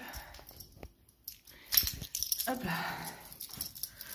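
Rustling and a few light clicks of things being handled, with a short noisy scuffle a little after halfway.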